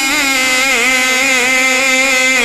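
A man singing a naat (Urdu devotional song) into a microphone, drawing out one long note with a wavering, ornamented melody.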